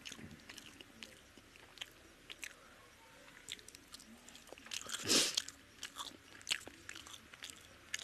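Close-up eating sounds of a person chewing a mouthful of chicken biryani eaten by hand: soft wet chewing and mouth clicks, with one louder bite about five seconds in.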